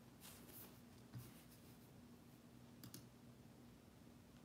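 Near silence: room tone with a faint steady hum and a few faint, short clicks, one about a second in and a pair near three seconds.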